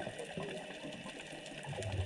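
Quiet underwater ambience picked up by a submerged camera: a faint steady hiss with scattered light crackles. Low water bubbling starts again near the end.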